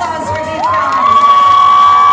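A loud, high-pitched voice rises about half a second in and holds one long note, over crowd noise.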